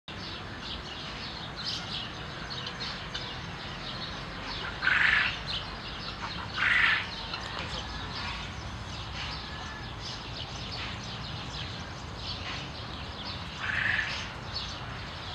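Small birds chirping and twittering throughout, with three louder, harsher short calls at about five seconds, about seven seconds, and near the end.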